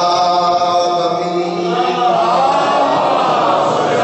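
A man's voice chanting a mourning recitation through a microphone in long held notes. About halfway through, the chant gives way to a denser, noisier wash of voice.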